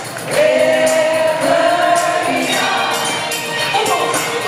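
Live rock concert music recorded from the audience: a singer holds one long note with vibrato over the band and violins, with percussion ticking steadily.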